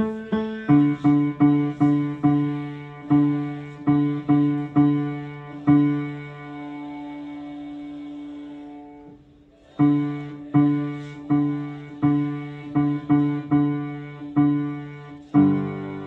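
Upright piano playing the bass voice part of a choral arrangement as a run of single struck low notes, about two or three a second. One note is held long in the middle, then after a short break the line goes on.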